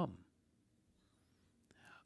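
A pause in a man's speech: the last of a spoken word dies away at the start, then faint room tone, then a small click and a short soft breath near the end.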